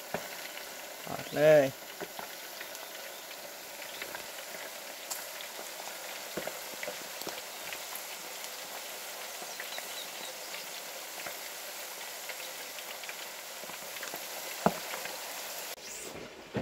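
Pieces of pike deep-frying in hot oil in an electric deep fryer basket: a steady bubbling sizzle with fine crackles. There is one sharp click near the end.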